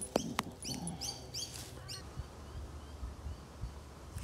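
Wild birds chirping: a quick run of about five short, high chirps in the first two seconds, then fainter ones. Two sharp clicks come right at the start.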